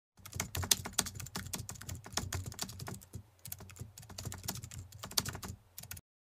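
Typing on a computer keyboard: a quick run of key clicks, a short pause a little over three seconds in, then more typing.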